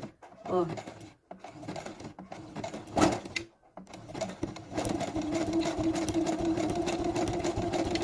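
Domestic sewing machine with a button-sewing foot stitching zigzag in place through a button's holes, run slowly on the foot pedal: rapid needle ticks in short runs, a brief pause, then a steadier run with a steady motor hum from about halfway.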